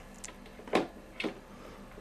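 A few short, soft clicks and rustles of a USB cable and plastic desk clock being handled.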